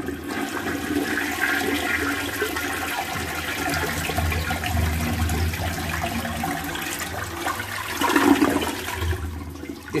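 Flush toilet flushing with full force: water rushes and swirls down the bowl, with a louder surge about eight seconds in as the bowl empties, then fading. It is a normal, strong flush now that the clogged jet hole at the bottom of the bowl has been cleared.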